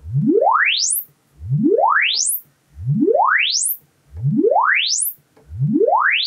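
Anthem ARC room-correction test tones: five pure-tone sweeps in a row, each rising smoothly from deep bass to a very high pitch in about a second, one starting roughly every 1.4 seconds. These are the measurement sweeps used to capture the speakers' in-room response at the microphone's first listening position.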